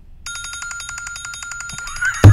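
Smartphone timer alarm ringing, a rapid even trill over a steady high tone, starting about a quarter second in: the one-second time limit for the clue has run out.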